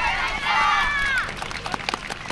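Several voices calling out together for about a second, ending on a falling pitch, followed by scattered handclaps from the audience.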